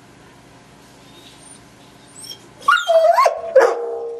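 English golden retriever whining to be let in: a faint high whine a little past halfway, then loud pitched whining yelps with falling and rising pitch near the end. It is asking to be let into the bath.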